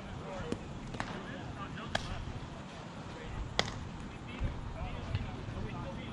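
Softball players talking at a distance across the field, with a few sharp knocks; the clearest two come about two and three and a half seconds in.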